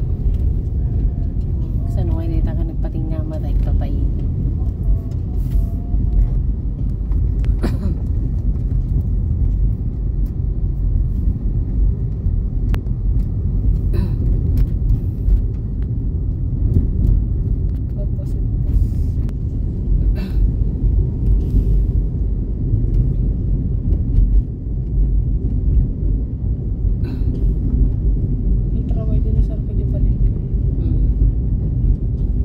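Steady low rumble of a car's engine and tyres heard from inside the cabin while driving slowly on a paved town road, with a few sharp knocks and rattles from bumps.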